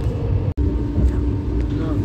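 Train carriage noise on an Indian Railways express: a steady low rumble and a steady hum, with faint voices. It comes after a brief dropout about half a second in.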